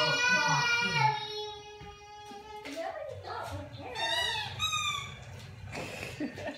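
Toddler girl singing, holding one long high note for about two and a half seconds. A few short, higher vocal sounds follow, rising and falling in pitch.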